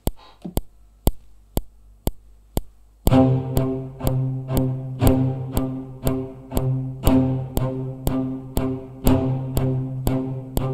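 A metronome click, about two ticks a second, runs alone for about three seconds as a count-in. Then the Spitfire Abbey Road Orchestra cello sample library joins, playing short spiccatissimo notes on one low pitch, re-struck in time with each click.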